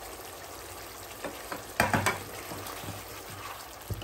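Mutton and fresh fenugreek leaves frying in a red chilli masala in a kadai on high flame, a steady sizzle. A spatula scrapes through the pan a few times, loudest about two seconds in.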